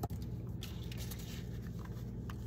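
Faint rustling and small ticks of hands handling a paper envelope and thread, with a short click right at the start, over a steady low hum.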